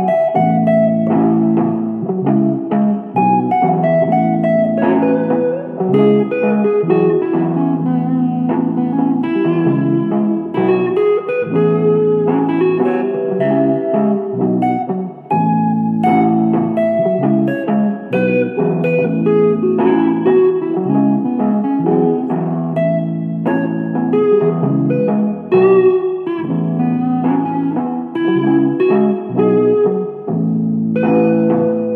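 Layered electric guitar loops playing an improvised instrumental blues-rock groove: a chordal rhythm part repeats every few seconds under picked single-note lines.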